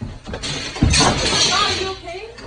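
A person falling heavily on a stage: a loud thump just under a second in, then about a second of crashing clatter with voices crying out.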